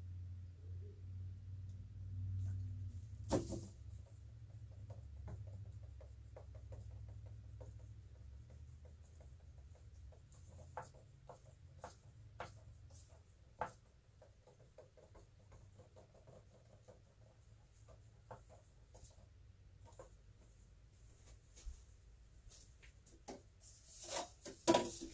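Wooden craft stick stirring thick white acrylic paint and pouring medium in a cup, giving faint, irregular scrapes and ticks against the cup. A single sharper knock comes about three seconds in.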